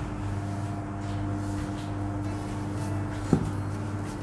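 Hand punching down risen, flour-dusted dough in a stainless steel bowl: soft, muffled pressing sounds under a steady low hum, with one short knock a little over three seconds in.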